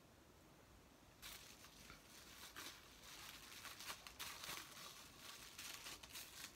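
Packaging crinkling and rustling as it is handled, starting about a second in and going on in irregular crackly bursts.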